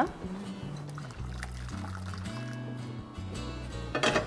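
Hot water being poured into a pan, under background music with a low bass line.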